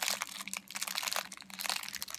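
Thin clear plastic bag crinkling and crackling in a rapid, irregular run of small crackles as it is handled and pulled open.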